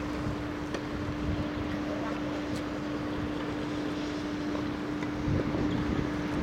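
Steady outdoor background noise with a constant low-pitched hum and a few faint clicks; no ball strikes.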